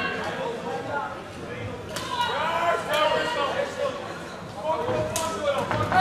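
Shouting voices in a large hall during a kickboxing bout, with sharp strikes landing about two seconds in and again a little after five seconds. The last ringing of the round bell fades out at the very start.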